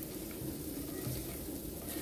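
Browned chopped onions sliding out of a skillet onto pork cubes in a slow-cooker crock, heard only as a faint, steady soft hiss with no clatter or knocks.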